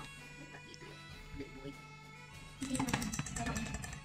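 Background music with steady held notes, and from about two and a half seconds in, a rapid clatter of a wire whisk scraping and knocking around a stainless steel bowl as rice-flour dough is stirred; this clatter is the loudest sound.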